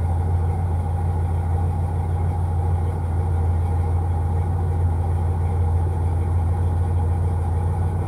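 GM G-body car's engine idling steadily, heard from inside the cabin as an even low hum.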